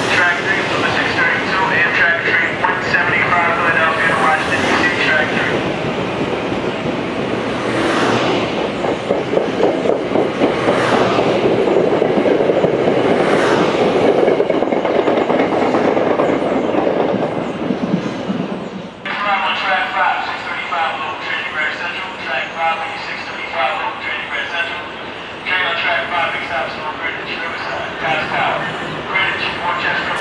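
A Metro-North commuter train moving out along the platform, its wheel and car noise swelling to a peak and dying away over a dozen seconds. Before and after it, a station public-address announcement is heard.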